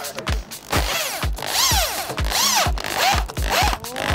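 Cordless electric drill boring into a wooden frame in several short bursts, its motor whine rising and falling in pitch with each squeeze of the trigger. Background music with a steady beat of low thumps plays along.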